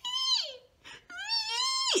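A woman's high-pitched falsetto wails, two of them: the first falls away, the second rises, holds and breaks off sharply, a mock cry of distress.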